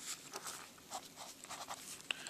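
Faint scratching of handwriting on lined notebook paper, in short, irregular strokes as numbers and letters are written.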